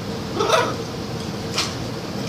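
A single short voiced sound about half a second in, followed by a sharp click about a second later.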